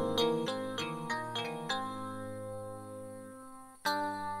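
Electronic keyboard music: a quick run of short chords, then a held chord that slowly fades before a new chord strikes near the end.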